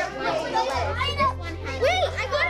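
Several children talking over one another at once, a busy classroom hubbub, over background music whose bass note shifts about three quarters of a second in.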